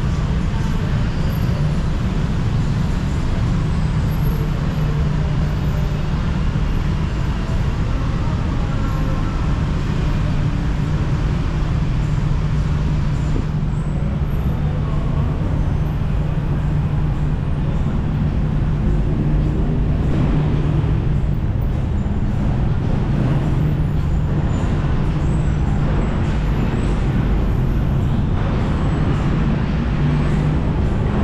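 Steady city road traffic noise rising from the street below, with a constant low hum.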